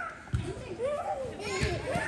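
Voices calling out across an indoor soccer arena during play, with two low thumps, about a third of a second in and again past a second and a half.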